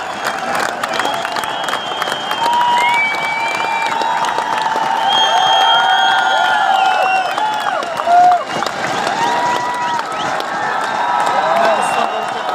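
Large crowd of protesters shouting and cheering, many voices overlapping with long drawn-out calls over a steady crowd roar, with some clapping. One voice rises louder than the rest about eight seconds in.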